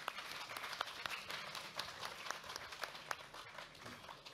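Audience applause: many people clapping together, a dense run of claps that thins out near the end.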